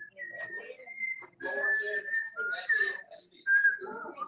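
A series of high whistled notes, each held up to about a second and stepping up and down in pitch, over indistinct talking.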